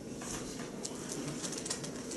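Faint rustling and small ticks of thin Bible pages being handled in a quiet room.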